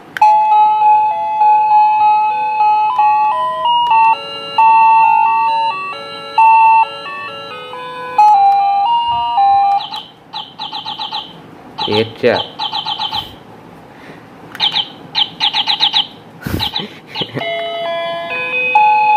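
Wireless doorbell receiver playing its electronic chime: a tune of clean beeping notes stepping up and down, then, about ten seconds in, a different tune of fast high chirps like birdsong, coming in several short runs. Its push button is being pressed to run through its built-in ring tunes.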